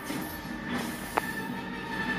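Film soundtrack played from a TV: dense rushing, rumbling sci-fi sound effects with a faint musical score underneath, and one sharp click a little past the middle.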